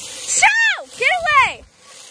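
A child's voice giving two short, high-pitched wails, each rising and then falling in pitch, about half a second apart.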